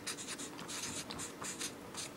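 Felt-tip marker pen writing on newspaper, a run of short, quick strokes of the nib across the paper.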